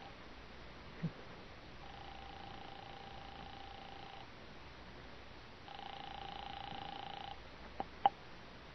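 Telephone ringing tone heard down the line after the number is dialled: a buzzing tone in rings of about two seconds with pauses of a second and a half between them, the last ring louder. A click comes just before the call is answered.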